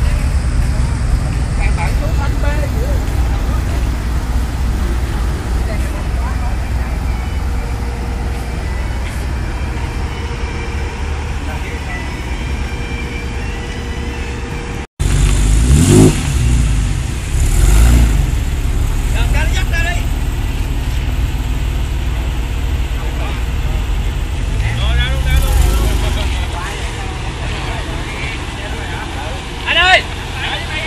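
Porsche 911's flat-six engine idling with a steady low rumble. After a cut partway through come two sharp revs about two seconds apart, and a smaller rev later on.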